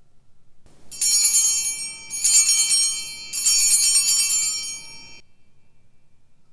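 Altar bells, a cluster of small bells on one handle, shaken three times for the elevation of the chalice at the consecration; each ring is a bright jingle of many high tones, and the ringing is cut off suddenly near the end.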